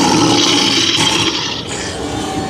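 Loud haunted-house soundtrack effects: a dense wash of noise with a sharp hit at the start and another about a second in.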